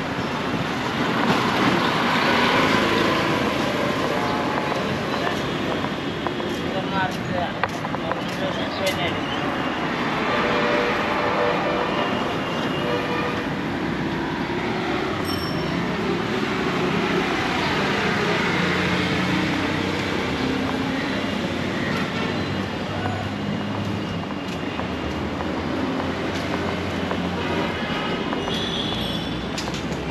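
City street ambience: steady traffic noise from passing engines, with scattered short horn beeps and indistinct voices of people nearby.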